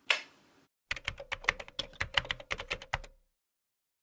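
Typing sound effect: a fast run of sharp key clicks lasting about two seconds, after a short burst of sound right at the start, then silence.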